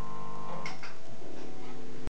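Electric guitar and bass left ringing through the amplifiers after the last chord, a steady held drone of several tones with amp hum. Two short high squeaks come about two-thirds of a second in, and one of the ringing tones stops at the same time.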